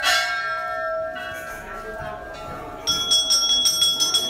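A temple bell is struck once and its tone rings on, slowly fading. About three seconds in, a smaller, higher-pitched bell starts ringing rapidly.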